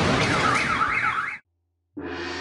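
A warbling alarm-like wail that rises and falls about three times a second, over a loud rush of noise. It cuts off abruptly about one and a half seconds in, followed by a brief dead silence.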